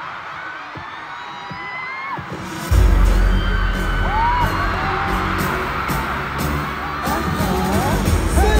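A crowd of fans screaming, then about two and a half seconds in a loud pop track with heavy bass comes in suddenly over the PA, keeping a steady beat as the screaming goes on.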